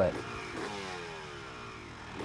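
Motocross motorcycle engine revving, its pitch sliding steadily down from about half a second in until near the end.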